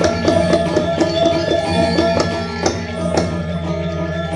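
Balinese gamelan ensemble playing barong accompaniment: kendang drum strokes and cymbal crashes over metallophone melodies and sustained low gong tones.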